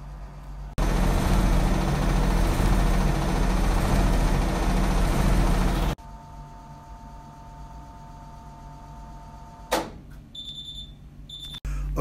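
Miele Professional commercial washing machine, its drum spinning a rug load with a loud steady rush and rumble that cuts off abruptly about six seconds in. A quieter steady hum with two even tones follows, then a click and short high-pitched beeps near the end as the machine signals that its cycle is finished.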